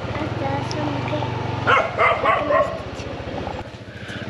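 Dogs barking, a few short barks about two seconds in, over a steady low hum.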